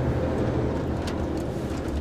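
HGV lorry's diesel engine running steadily while driving, heard from inside the cab as a low, even drone with road noise.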